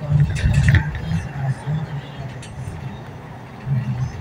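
Road and engine noise inside a moving car at highway speed: a steady rumble and hiss, with a low voice talking faintly underneath.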